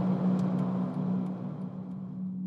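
Steady road and engine noise of a car driving along a highway, with a constant low hum, gradually fading out.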